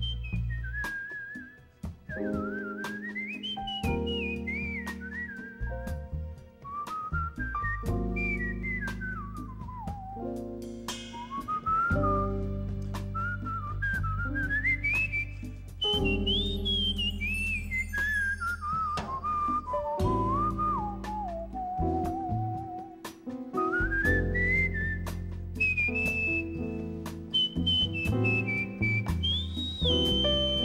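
A man whistling a jazz melody into a microphone, the single pure line gliding up and down through phrases of a few seconds each. Underneath it a band plays bass notes and guitar chords, with light percussion ticks.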